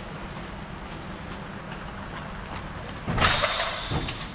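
Standing NS ICM 'Koploper' electric multiple unit humming steadily at the platform. About three seconds in comes a short, loud hiss of released air, lasting under a second.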